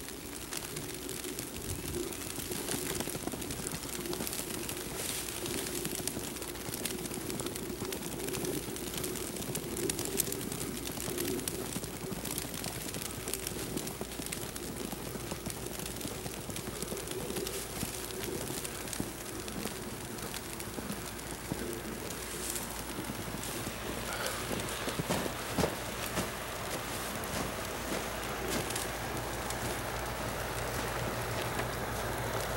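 Outdoor ambience in falling snow: a steady hiss over a low drone, with irregular soft crunches of footsteps in snow and a few louder knocks near the end.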